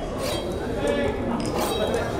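Crowd of many voices chattering at once in a busy tavern, with two brief clinks of drinkware.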